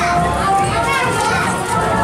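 Several people's voices, children among them, talking and calling out over one another.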